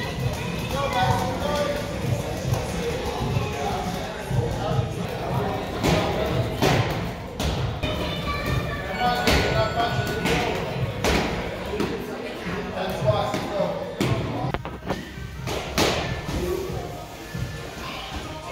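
Boxing gloves punching hanging heavy bags: irregular thuds from several children hitting at once, over background music and voices.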